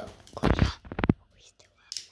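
Plastic handling noise from a Beyblade ripcord launcher: a short rush of rubbing about half a second in, then a quick run of clicks as the ripcord is fed into the launcher.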